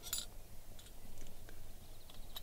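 Faint metallic clicks and clinks of a steel claw mole trap being handled, with the sharpest click just after the start and a few lighter ones after it.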